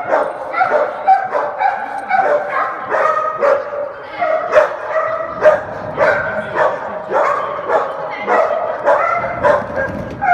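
A dog barking over and over, about two barks a second without a break, as it runs an agility course.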